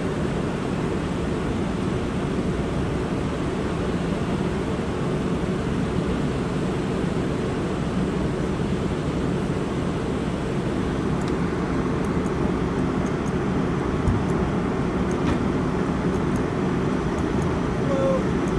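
Fire apparatus engines running steadily at a crash scene: a constant low drone with no change in pitch, with a few faint clicks in the second half.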